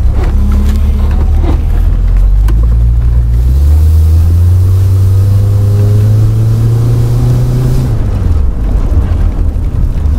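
Car engine pulling under acceleration: its note climbs steadily from about three seconds in, then falls back a little before eight seconds as the throttle eases. It is heard from inside the open-topped car.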